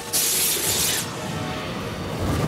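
Cartoon sound effect of stone blocks shattering and bursting apart: a sudden loud crash with a bright crackling burst lasting under a second, then a lower rumbling tail. Background music plays underneath.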